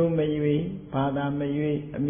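A monk's voice intoning Pali in a slow recitation chant: two long held notes, the second starting about a second in at a lower pitch.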